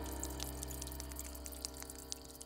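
Juice from fermenting cacao bean pulp dripping from a wooden fermenting box onto a wet surface: a scatter of faint, separate drip ticks. A steady held tone fades slowly underneath.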